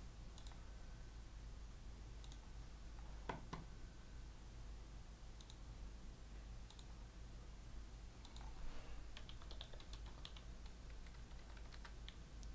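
Faint, scattered computer keyboard clicks, with a quicker run of taps around nine to eleven seconds in, over a steady low hum.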